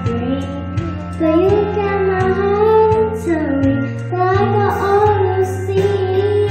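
A young girl singing a song into a microphone, holding long notes that bend in pitch, over steady instrumental accompaniment.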